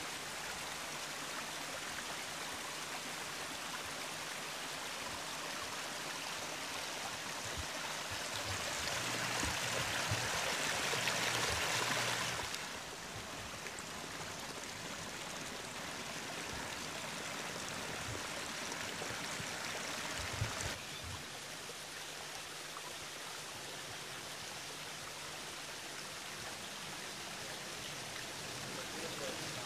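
Water running over a rock waterfall into a landscaped garden pond, a steady rush. It swells louder for a few seconds around the middle and drops suddenly, with another slight change in level later on.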